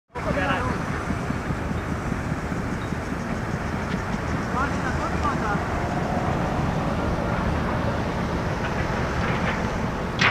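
Outdoor wind rumbling on the microphone, a steady low noise that stays even throughout. Faint distant voices come through about halfway in.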